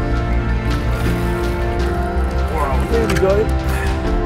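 Background music with a steady low pulse, and a person's voice heard briefly a little over halfway through.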